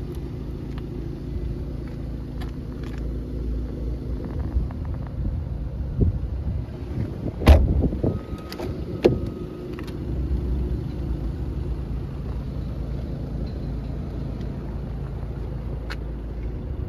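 Audi A6 2.0 TDI four-cylinder diesel engine idling steadily. A car door shuts with a loud thump about halfway through, among a few lighter knocks.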